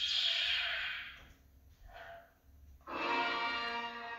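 Hallmark Star Wars Storyteller ornaments and Death Star tree topper playing their interactive scene audio through small built-in speakers: a hissing burst about a second long, a shorter one around two seconds in, then a sustained, richly overtoned tone near the end.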